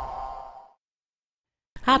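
The tail of a channel logo sting: a held electronic tone fading out within the first second, followed by dead silence.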